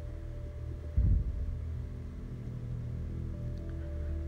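Soft background music of held, sustained low notes, with one brief low thump about a second in.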